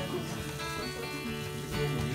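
Acoustic guitar strummed with a bass guitar playing under it: a live instrumental passage between sung lines, the chord ringing on and a fresh strum coming near the end.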